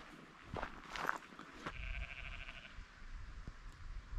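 A sheep bleating faintly: one wavering bleat about two seconds in, lasting about a second.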